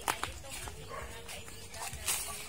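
Footsteps on a dirt path strewn with leaf litter, with a sharp knock near the start and a faint drawn-out call in the background through the middle.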